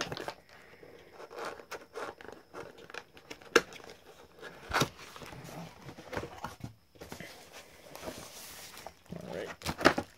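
A cardboard box being opened and handled: scrapes and a few sharp knocks of the cardboard lid, with tissue paper wrapping rustling.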